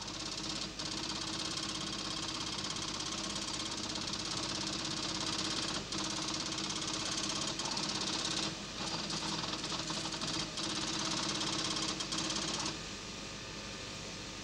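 Computer line printer printing at about a thousand lines a minute, a rapid, continuous mechanical chatter broken by a few short pauses. It falls away to a quieter hum about a second before the end.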